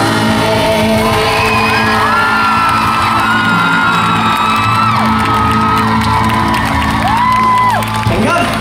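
Live pop band holding a sustained chord in a large hall while fans scream and whoop over it in high, gliding cries. The held chord stops near the end.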